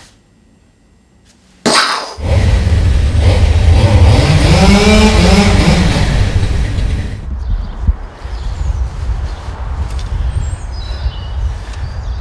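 A chainsaw engine bursts in about two seconds in and runs hard, its pitch rising and falling back once. It carries on somewhat quieter after about seven seconds.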